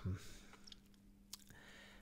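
Quiet room tone with a faint steady low hum and two soft clicks, one about a third of the way in and one just past the middle.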